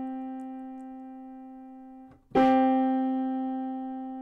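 Two piano notes struck together and left to ring and fade, then struck together again about two seconds in.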